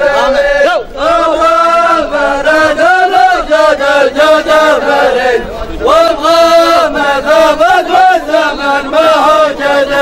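A line of men chanting together in loud unison, with long held notes and sliding pitch, as in traditional Dhofari wedding chanting.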